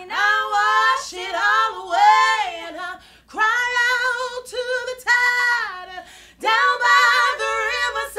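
Two women singing a cappella in a soul style, long held notes with vibrato in three phrases separated by brief breaths.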